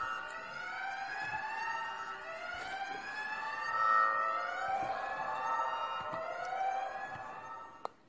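Wailing siren sound effect, its pitch sweeping up and down in slow overlapping rises and falls, sounding the battery-overcharging warning. It fades toward the end, with a short click just before it stops.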